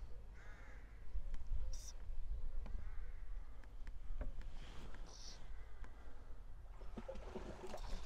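Bird calls a few times, harsh and pitched, over a steady low rumble, with two short high hissing sounds in between.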